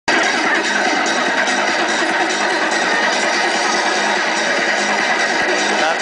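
Music playing loudly and continuously from a street busker's loudspeaker rig.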